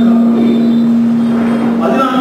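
A man lecturing through a microphone and loudspeaker, over a steady low hum.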